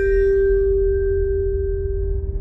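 Logo jingle: a bell-like chime tone rings on and slowly fades over a deep, steady low drone.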